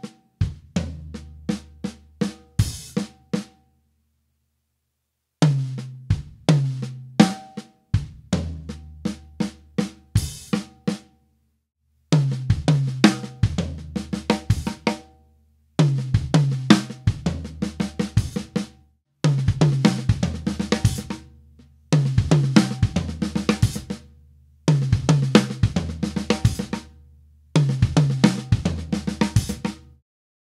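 Acoustic drum kit playing a one-bar fill of accented rack tom and floor tom hits over ghosted snare notes, kick drum and a hi-hat stroke, closing on a crash cymbal. It is played slowly at first, then repeated about six times at a medium tempo in phrases of about three seconds, with abrupt silent gaps between the takes.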